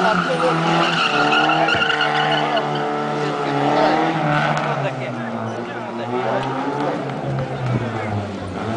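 Toyota Starlet's engine revving hard, rising and falling in pitch as the car is thrown around a cone course, with tyre squeal in the first few seconds.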